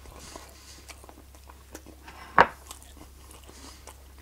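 A person chewing a mouthful of fried breakfast, with small wet mouth clicks throughout, and one sharp click about two and a half seconds in.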